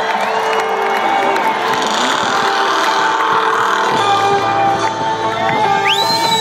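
A large concert crowd cheering and whistling over live rock music with long held notes, as the band starts the song.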